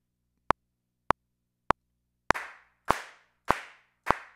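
Software metronome clicking on the beat at about 100 beats per minute, four clicks. Then the SoCal drum kit's sampled handclap plays on each of the next beats, three claps each with a short fading tail, in time with the metronome as a recorded count-in.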